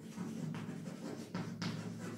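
Chalk writing on a board: a string of short scratching strokes, a few each second, over a steady low hum.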